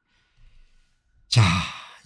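A man sighs: a faint breath, then about a second and a third in a loud breathy exhalation voiced as the word '자' ('well, now'), trailing off.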